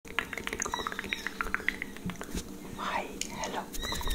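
Close-miked ASMR mouth sounds: rapid sharp clicks and pops from the lips and tongue, with a breathy whisper about three seconds in.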